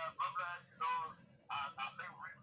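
A person's voice in short, high-pitched bursts with brief gaps between them.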